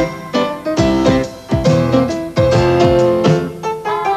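Grand piano played live in a band arrangement: chords and melody struck over a bass line, with low drum hits marking the beat.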